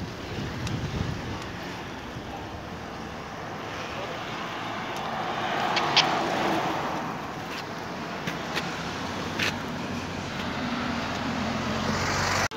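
A car passing close by a moving bicycle, its tyre and engine noise swelling to loudest about six seconds in, over the steady road noise of riding.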